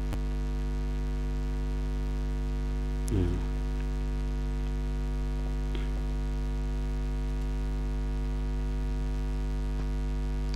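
Steady electrical mains hum with a stack of steady overtones, picked up by the recording setup. About three seconds in there is a brief vocal sound with a wavering pitch, and a few faint clicks are heard.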